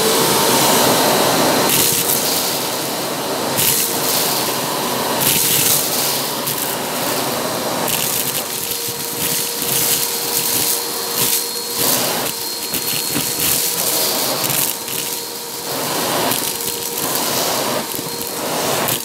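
Vacuum cleaner running with a steady motor whine while its crevice nozzle sucks up aquarium gravel from a shag rug. Irregular surges of rattling come again and again as the stones are drawn up the tube.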